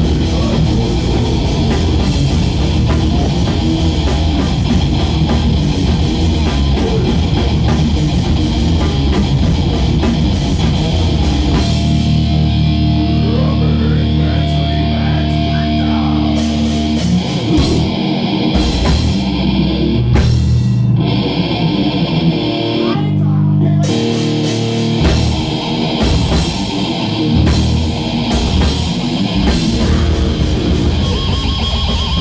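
Loud heavy rock music with distorted electric guitars and drums. About twelve seconds in the drums thin out and held chords ring, and the full band comes back in about twenty-four seconds in.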